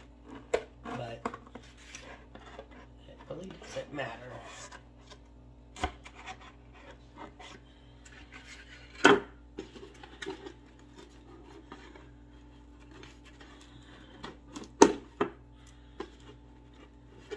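Scissors and a utility knife cutting through a stiff paper mache hat box, with rasping, crunching and scattered clicks from the cardboard. Two sharp knocks stand out, the loudest about nine seconds in and another near the end.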